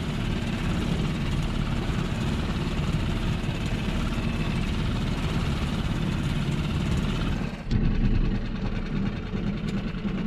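Tohatsu 5 hp four-stroke outboard motor running steadily under way, a low, fast-pulsing drone with hissing water and wind noise over it. About three-quarters of the way through the sound dips briefly and the high hiss falls away.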